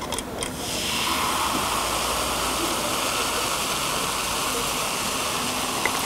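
Vinegar poured into a sodium bicarbonate solution, a few light clicks as the pour starts, then a steady fizzing hiss of carbon dioxide bubbles as the acid reacts with the base and neutralises it.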